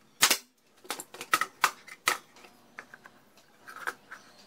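Pneumatic brad nailer firing nails into an MDF box: one loud sharp shot about a quarter second in, then several more sharp cracks and knocks over the next two seconds and one more near the end.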